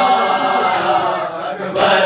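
Group of men chanting a nauha (mourning lament) in unison, with open-hand chest slaps of matam striking roughly once a second in time with the chant. One loud slap falls near the end.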